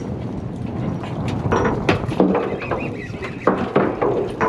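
Fishing-boat deck noise as a hooked mackerel is lifted aboard: a steady low rumble with scattered clicks and knocks.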